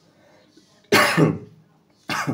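A single loud, sudden cough from a man about a second in.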